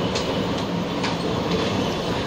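Steady rumbling background noise with two or three faint clicks.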